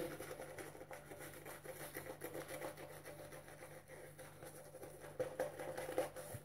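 Boar-bristle shaving brush working shaving soap lather over a stubbly face: a faint, steady scratching of bristles through the lather, with a few louder strokes near the end.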